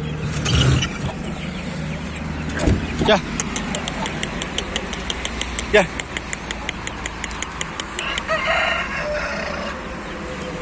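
Chickens calling around the coop, with a rooster crowing once about eight seconds in.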